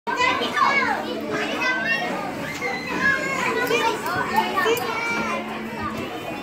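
Many young children's voices overlapping, with high shouts and squeals, in a large indoor play gym.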